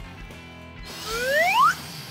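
A rising whistle sound effect, like a slide whistle, played over the breaths that blow up a balloon: one smooth upward glide about halfway through, over quiet background music.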